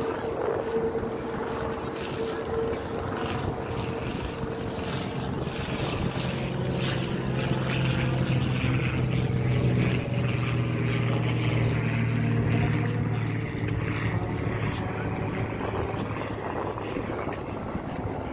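Steady engine drone with a low hum, growing louder through the middle and easing off near the end.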